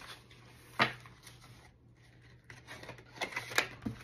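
Paper banknotes and plastic cash envelopes in a binder being handled on a tabletop: one sharp click about a second in, then rustling and a few clicks near the end.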